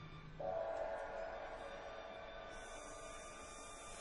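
Symphony orchestra playing quiet, sustained contemporary writing. A low held note fades away as a dense held chord in the middle register enters abruptly about half a second in and slowly dies down. A high, hissing shimmer joins about halfway through.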